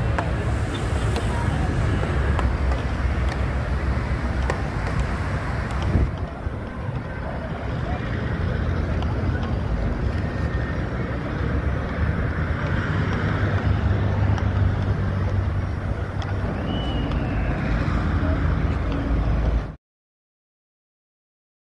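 Steady road traffic noise with a deep rumble, heard outdoors by the sea; it cuts off abruptly near the end.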